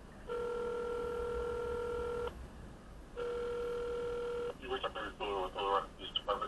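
Telephone ringing tone heard through a phone's speaker: one long ring, then a second that is cut off after about a second as the call is picked up and a voice on the line begins talking.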